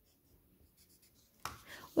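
Pencil writing on graph paper: faint scratching as a point is marked, then a sharper tick about one and a half seconds in.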